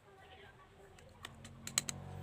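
A quick run of five or six light, sharp clicks and taps about a second in, from small hard painting supplies being handled on a tabletop.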